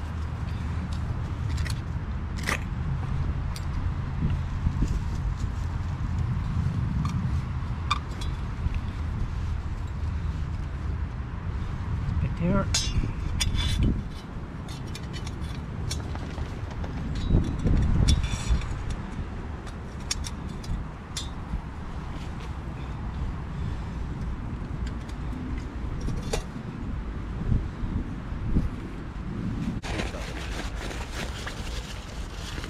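Light metallic clicks and clinks as the small metal parts of a Pathfinder camp stove, its burner and stand, are handled and set in place, over a steady low rumble.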